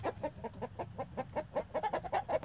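Chickens clucking in a quick, steady run of short clucks, about seven or eight a second: unsettled birds that are "not happy now".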